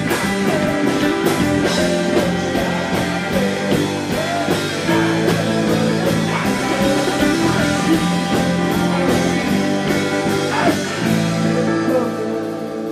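A live indie rock band playing: electric guitar, drums and keyboard, with a man singing lead.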